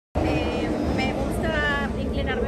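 Sound cuts in abruptly from dead silence just after the start. A woman speaks over a steady low outdoor rumble of wind and engine noise.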